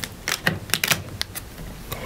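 A run of light, irregular clicks and taps as die-cut cardstock pieces are handled and set down on the table.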